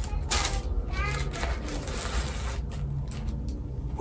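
Tissue paper rustling and crinkling in irregular handfuls as a pair of sandals is unwrapped from a shoebox. A faint voice is heard briefly in the background.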